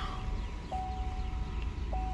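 A car's electronic warning chime: one steady mid-pitched tone about a second long, starting a little under a second in, repeating about every two and a half seconds over a low rumble.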